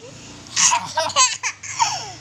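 A young boy laughing in a run of short bursts, starting about half a second in.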